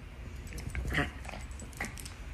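Small terrier-type dog giving a few short whimpering yips while play-wrestling with a cat, the loudest about a second in.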